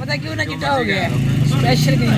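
People talking over a steady low engine hum, which gets louder about a second in.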